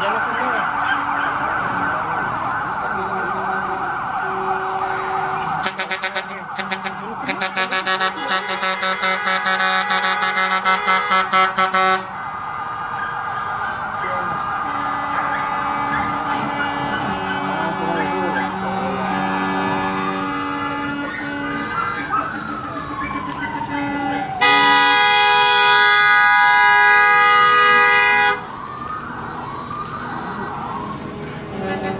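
Emergency vehicle sirens and horns sounding. A rapid pulsing sequence runs from about six to twelve seconds in, and later a wail rises and falls. Near the end comes a long steady horn blast, the loudest sound.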